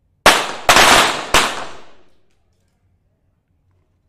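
.22 sport pistols firing three shots in quick succession, about half a second apart, each ringing out in the hall's reverberation and dying away about two seconds in.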